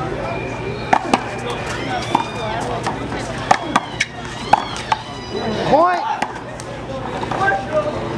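Rubber handball smacked by hand and rebounding off a concrete wall and court during a one-wall handball rally: a string of sharp, irregularly spaced smacks, most of them in the first five seconds.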